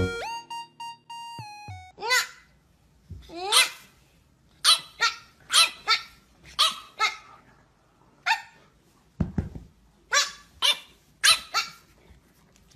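A French bulldog puppy barking in short, high-pitched yaps, about a dozen of them, some sliding up in pitch. Piano music fades out in the first two seconds.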